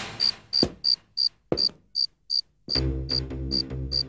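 Cricket chirping in a steady rhythm, about three chirps a second. Two soft low thuds fall in the first second and a half, and a low sustained music drone comes in about two-thirds of the way through.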